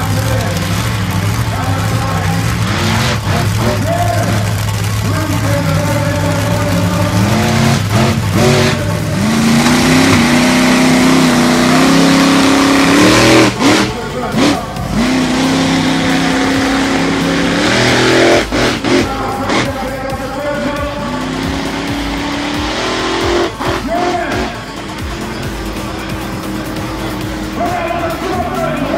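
A big off-road 4x4 truck's engine running steadily, then revving hard as it drives across sand. Its pitch climbs in steps, drops back about halfway through, climbs again and then falls away.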